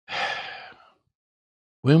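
A man's breath drawn in sharply through the mouth, close to a clip-on microphone, lasting under a second and fading out; he starts speaking again near the end.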